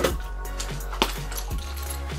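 Soft background music, with one sharp click about a second in as the key holder and its keys are handled.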